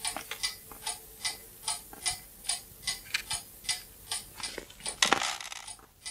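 A clock ticking steadily, about two and a half ticks a second. About five seconds in, a short, louder burst of rustling.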